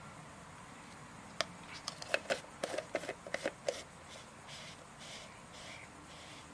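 A screw-top plastic lid being put on a plastic tub: a quick run of light clicks and snaps over about two seconds, then a little faint rubbing.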